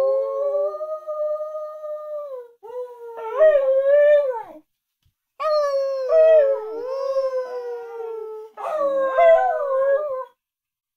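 Australian kelpie howling: four long howls whose pitch wavers and slides down at the ends, with a clear pause just before halfway.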